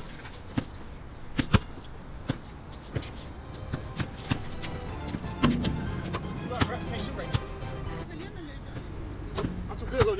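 A basketball dribbled and bounced on an outdoor hard court: irregular sharp knocks, a dozen or so, with faint voices in the background.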